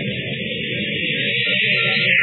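Radio-drama sound effect of a rocket ship building pressure to launch: a steady rushing hiss over sustained low music, swelling slightly near the end.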